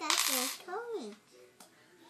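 Coins clinking and jingling together for about half a second at the start, followed by a short bit of a small child's babbling.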